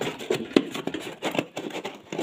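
Cardboard packing insert scraping and rustling as it is handled inside an air fryer basket: a run of short, irregular scrapes and taps.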